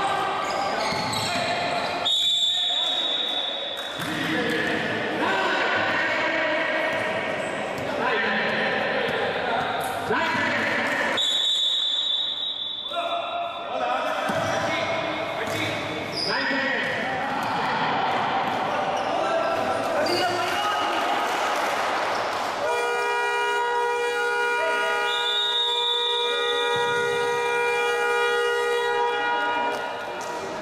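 Basketball game sounds echoing in a large hall: the ball bouncing on the court among players' and spectators' voices, with two long, high referee's whistle blasts. For the last several seconds a steady horn-like tone sounds.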